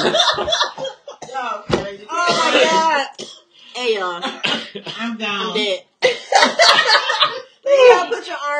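People talking, with a cough about two seconds in.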